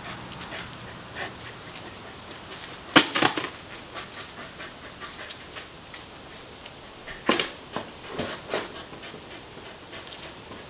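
A dog panting, broken by short, sharp noises. These are loudest in a cluster about three seconds in and again in several bursts between about seven and eight and a half seconds in.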